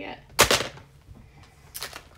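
A sudden loud bang close to the microphone about half a second in, then a short hiss near the end.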